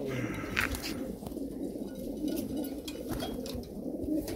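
A flock of Shirazi pigeons cooing all at once, many overlapping calls in a continuous low chorus, with a few short sharp clicks among them.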